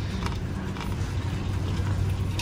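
Metal shopping cart rolling over a concrete floor: a steady low rumble with a few faint rattles.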